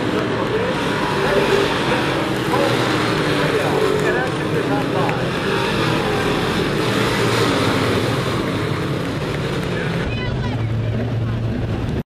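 A field of stock cars racing on a short oval, their engines running hard at speed as they pass, with a steady overlapping drone that rises and falls in pitch.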